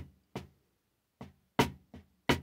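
Drumsticks striking a snare drum in four separate, slow strokes, each with a short ring, the third the loudest: a rudiment sticking, inverted double strokes, played out one stroke at a time.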